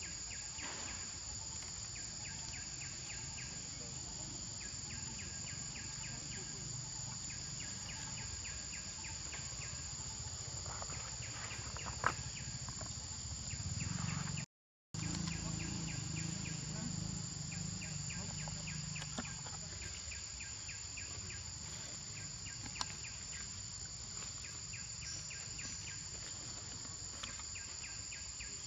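A steady, high insect drone, with repeated one- to two-second bursts of rapid, even chirping from other insects and a few faint clicks. The sound cuts out completely for about half a second around the middle.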